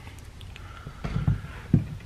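Cordless power tools being handled and set down on a bench mat: soft knocks and rustles, with a sharper knock near the end.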